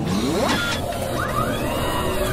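Mechanical sound effects for an animated intro: a steady machine whir with pitch sweeps, one rising just after the start and an arcing one in the second half.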